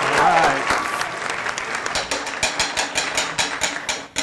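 Game-show category wheel spinning, its pointer clicking rapidly over the pegs at about six clicks a second. Laughing voices fade out during the first second.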